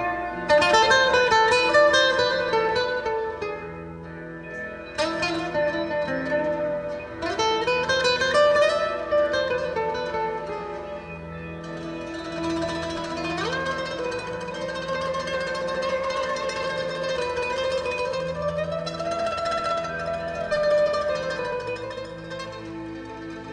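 Solo nylon-string acoustic-electric guitar being played, a picked melody over ringing notes, with full chords struck about half a second in, at about five seconds and at about seven seconds.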